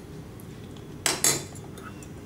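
Kitchenware clattering: two quick knocks close together, a little past a second in.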